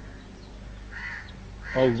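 Faint steady hum and hiss, with one faint bird call about a second in.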